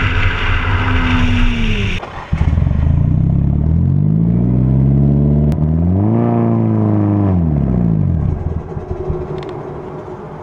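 For the first two seconds, a Nissan 350Z's V6 runs at steady speed on the road. Then a Nissan 240SX's turbocharged SR20DET four-cylinder, standing still, is revved once: its pitch climbs to a peak about six and a half seconds in and drops back, and it idles more quietly near the end.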